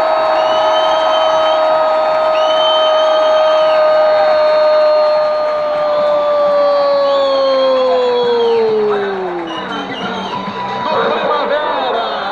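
Football commentator's long drawn-out goal shout, "gol", held on one pitch for about nine seconds and then falling away, over steady crowd noise. Shorter excited commentary follows near the end.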